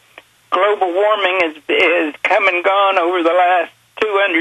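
A person talking over a telephone line, the voice thin and narrow, from about half a second in until shortly before the end.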